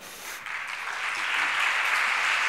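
Audience applauding, starting about half a second in and building to steady clapping.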